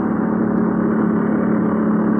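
Steady engine and road drone inside a tour bus, with a constant low hum, heard on a muffled, low-fidelity hidden tape recording.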